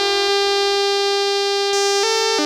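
A single synthesizer note held steady in pitch in an electronic pop track, with the drums dropped out.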